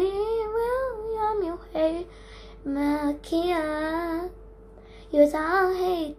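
A boy singing unaccompanied: a long rising and falling phrase, a short note, a held wavering phrase, then a new phrase starting near the end, with short pauses between.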